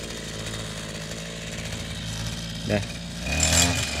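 Brush cutter engine idling steadily, then revving up near the end as the operator starts to clear tall vegetation.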